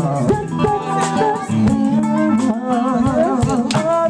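A live band playing, with guitar prominent.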